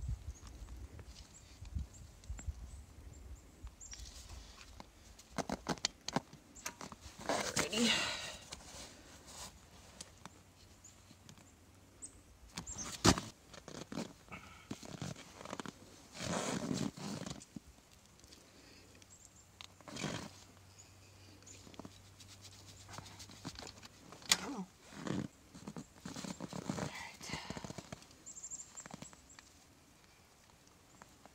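A dog screaming in several separate bursts of high, voice-like yelping and whining, with a few sharp clicks and knocks in between from a grease gun being worked on a tractor loader's zerk fitting.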